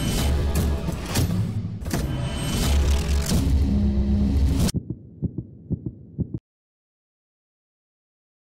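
Logo-sting music with deep, throbbing bass hits. At about five seconds it drops to a run of short, fading pulses, then cuts to silence a little after six seconds.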